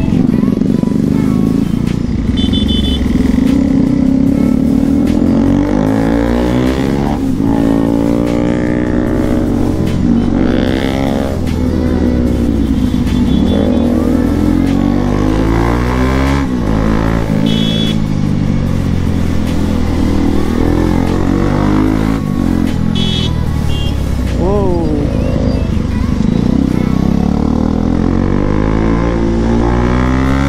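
Single-cylinder engine of a Bajaj Pulsar NS200 motorcycle under way, its pitch rising and falling again and again as the rider accelerates, shifts and eases off. A few short high beeps sound in the traffic, about two seconds in, near the middle and about two-thirds of the way through.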